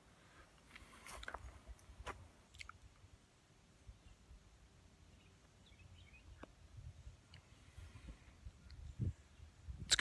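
A few soft, scattered mouth clicks and lip smacks of someone puffing on a tobacco pipe, faint against quiet outdoor background, with a low rumble growing in the second half.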